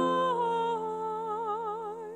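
A woman singing one long held note with vibrato, stepping down slightly about half a second in, over sustained grand piano chords; a piano chord is struck at the start.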